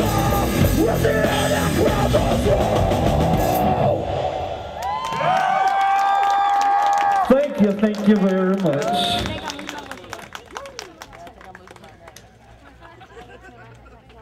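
A heavy metal band with distorted guitar, bass and drums plays loudly, then stops abruptly about four seconds in at the end of a song. A few long yells and whoops follow, and after that it is much quieter, with faint scattered clicks.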